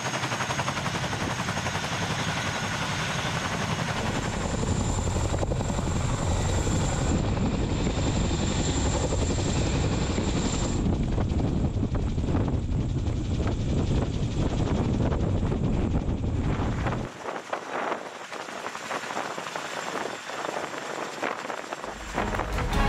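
Boeing CH-47 Chinook tandem-rotor helicopter running: steady, heavy rotor and turbine-engine noise, with a high turbine whine through the middle. It turns quieter and thinner for the last few seconds.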